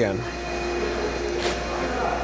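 Okamoto ACC-1632DX hydraulic surface grinder running with its hydraulic unit and spindle on: a steady hum carrying a few steady tones, with a brief faint hiss about a second and a half in as the table traverse is restarted.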